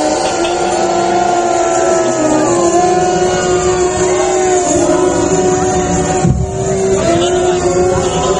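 Held droning notes that step to a new pitch every two to three seconds, with many overlapping wailing tones sliding up and down above them. A low thump about six seconds in.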